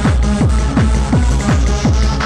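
Electronic rave dance music from a DJ set: a fast four-on-the-floor kick drum, about three beats a second, each hit dropping in pitch, under sustained bass and synth layers.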